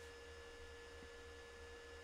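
Near silence: a faint, steady low hum with a thin, steady tone above it.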